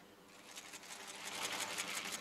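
Many camera shutters firing in rapid overlapping bursts. The clicking starts about half a second in and grows denser and louder.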